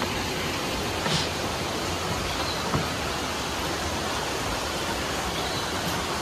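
Steady rush of water, like a nearby waterfall or stream, with a couple of faint taps.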